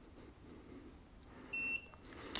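A single short electronic beep from the Xiaomi Roidmi Mojietu portable tyre inflator, about one and a half seconds in, the unit's acknowledgement of a button press.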